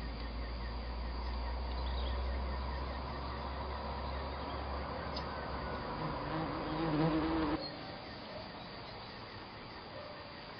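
Outdoor background ambience: a steady low rumble with faint high buzzing over it, which drops abruptly about seven and a half seconds in to a quieter background.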